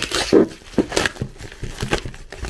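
Scissors cutting into a plastic courier mailer, the plastic rustling and crinkling in short bursts: one at the start, one about a second in and one near the end.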